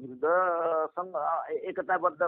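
A man talking, with one long drawn-out vowel a fraction of a second in, then quicker speech.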